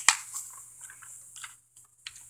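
Glossy catalogue paper being handled and a page turned: a sharp click just after the start, then soft scattered rustles, over a faint steady hum.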